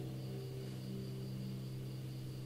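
Taylor GS Mini acoustic guitar's last chord ringing on and slowly fading, with no new strokes: the end of the song.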